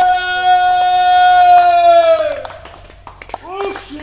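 A man's long, steady ceremonial call held on one note, sliding down and dying away about two and a half seconds in, followed near the end by a shorter rising call and a few sharp claps.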